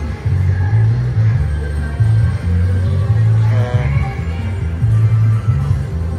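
Video slot machine's free-spins bonus music, a loop with a pulsing, heavy bass beat.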